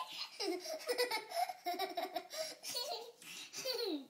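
A young child laughing in a run of short bursts.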